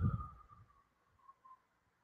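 A man's breath blowing against the microphone, a short gust in the first half-second, then a faint fading tone and near silence.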